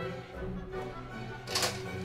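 Background music playing, with a sharp plastic clack about one and a half seconds in as a toy foam-dart blaster is handled and loaded.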